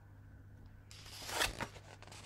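A page of a picture book being turned: a brief papery rustle starting about a second in.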